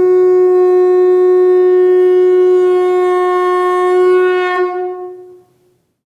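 Conch shell (shankha) blown in one long, loud, steady note that tails off and ends about five seconds in.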